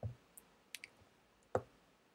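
A few faint, short clicks and taps scattered through the two seconds: a stylus tapping on a tablet screen.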